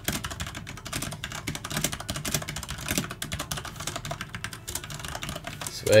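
Fast typing on a computer keyboard: a steady run of quick key clicks.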